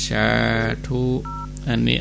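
A single short telephone keypad (DTMF) tone about a second in: two pitches sounding together for roughly a quarter of a second, heard over a phone line between stretches of a man's speech.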